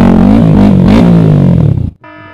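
Yamaha R15 V3's single-cylinder engine revving up and down repeatedly while wading through flood water. The sound cuts off abruptly just before the end.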